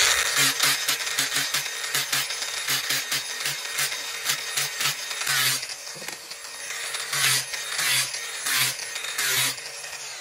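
Cordless angle grinder running with an abrasive disc, grinding down a thin wooden stick to slim it into a dowel, in a run of rasping passes with a few louder surges where the wood bites harder.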